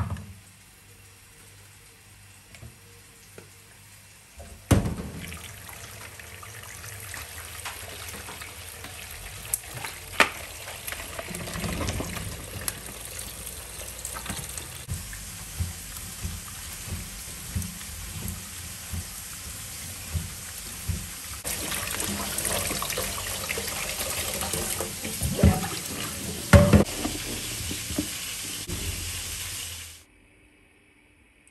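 Water running into a plastic bowl in a stainless steel kitchen sink while fruit is rubbed and washed in it by hand, with scattered knocks and clicks. The water starts just after a thump about five seconds in and runs louder and brighter from about twenty-one seconds in.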